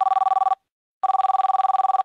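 Electronic telephone ringtone signalling an incoming call: a trilling two-tone ring. One burst ends about half a second in, and another of about a second starts just after a second in.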